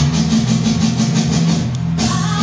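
Live band music: sustained bass notes under high percussion ticking in a quick, even rhythm of about six strokes a second.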